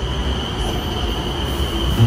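Elevated metro train running along a station platform: a steady rushing noise with a high, steady whine.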